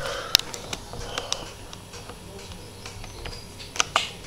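A few light, scattered clicks and taps from a laptop being operated, its keys and touchpad buttons pressed to open a document.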